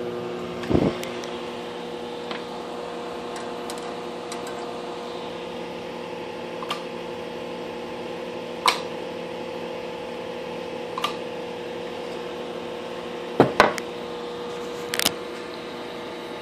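Steady electrical hum and fan noise from a Heathkit SB-220 linear amplifier running a 3-500Z tube, with several light clicks and knocks scattered through it, the loudest pair about three-quarters of the way in.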